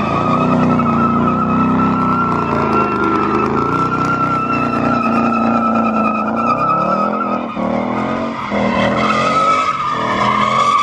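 A Ford Mustang GT's 5.0 V8 is held at high revs while its rear tyres squeal continuously in a smoky burnout. The engine note rises and falls as the car slides, and the high squeal weakens briefly before coming back strong near the end.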